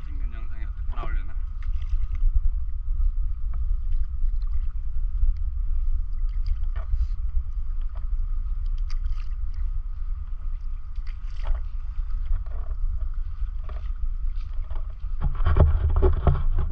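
Stand-up paddleboard paddle working through calm sea water, with short scattered splashes of the blade over a steady low rumble. The splashing gets louder and busier near the end.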